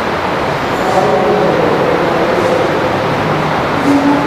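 A steady, loud rushing noise with no clear source. Faint tones sit in it from about one to two and a half seconds in.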